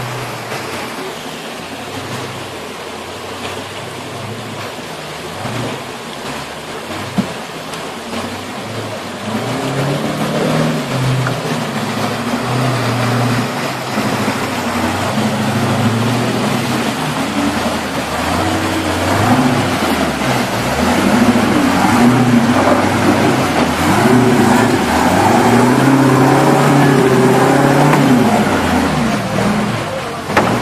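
Off-road vehicle engine running and revving, its pitch rising and falling over uneven ground, getting louder in the second half.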